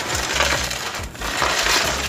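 Gritty crunching and scraping of a damp cement-and-sand mix being scooped and handled with a gloved hand, in two loud swells about a second apart.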